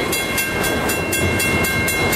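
Autorack freight cars rolling past at close range: a steady rumble of wheels on the rails with a rapid, even clicking clatter and a steady high-pitched ringing over it.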